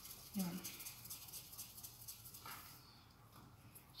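Faint rubbing of palms rolling a small ball of flour dough, a soft, fast rustle that thins out about two and a half seconds in.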